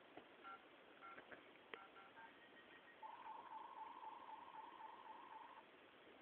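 Faint telephone-like electronic beeps: a few short two-note blips in the first two seconds, then a steady, slightly warbling tone from about three seconds in that lasts about two and a half seconds.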